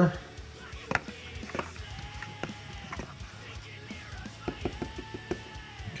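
Coffee grounds and hot water being stirred with a stirrer in the metal brewing chamber of a Fellow DUO coffee steeper: soft, irregular taps and clicks of the stirrer against the chamber.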